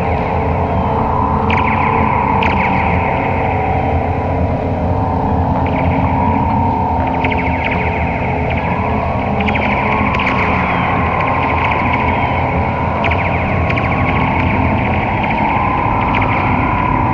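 Sound art picked up by wind-driven wire-and-disc terrain instruments: a steady low hum under a slowly wavering mid-pitched drone, with short trains of rapid clicking pulses higher up every few seconds.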